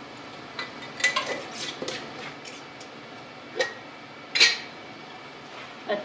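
Light clinks and knocks of glass spice jars and a measuring spoon being handled: a few small taps in the first two seconds, a sharper one about three and a half seconds in, and the loudest clink about a second later.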